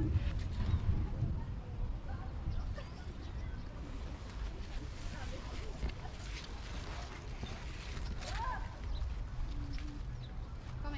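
Uneven low rumble of wind and handling noise on a phone's microphone, loudest at the start, with a faint short chirp about eight seconds in.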